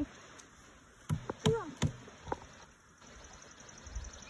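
A quiet pause holding a few short, soft knocks and a brief vocal sound, then a faint, rapid high-pitched chirping near the end.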